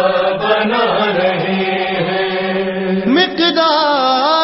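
Unaccompanied male voices chanting an Urdu manqabat. A long note of the refrain is held for about three seconds, then a solo voice glides up into the next line with a wavering, ornamented melody.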